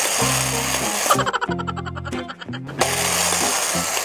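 Electronic music plays over a battery-operated toy coin bank's mechanism as it takes in a coin. The mechanism gives a whirring rattle, with a run of fast, even clicking through the middle.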